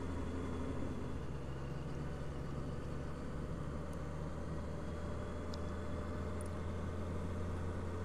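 Honda CB650F's inline-four engine running steadily at low speed, an even low hum with road noise.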